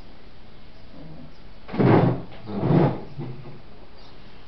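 Two loud bumps with rustling right beside the microphone, each about half a second long and under a second apart: a person getting up and brushing against the webcam's surroundings.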